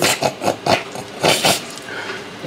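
A man laughing hard in a run of short, breathy bursts, with one longer burst about a second and a half in.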